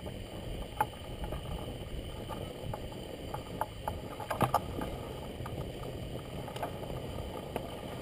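Low, steady wind rumble with scattered small clicks and rustles of clothing and gear against the basket rim as a jumper climbs over the edge of a hot air balloon basket.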